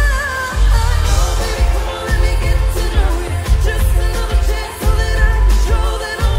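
Live pop song with a sung lead vocal over a heavy, bass-boosted beat; the deep bass drops out briefly about every second and a half.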